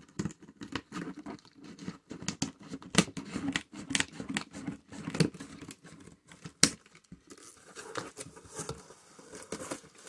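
Scissors cutting through packing tape on a cardboard box, a run of snips and scrapes with sharp clicks, the loudest about three seconds in and again past six seconds. In the last few seconds the tape tears and the cardboard flaps rustle as the box is pulled open.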